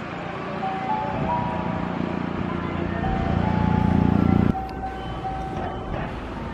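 A limited express electric train passing through the station. Its running rumble builds and drops off suddenly about four and a half seconds in, over steady tones that shift in pitch in steps.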